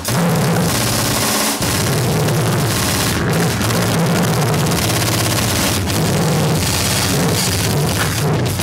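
Gorenoise / harsh noise recording: a loud, dense wall of distorted noise over a choppy low rumble, cutting out briefly right at the start and again about one and a half seconds in.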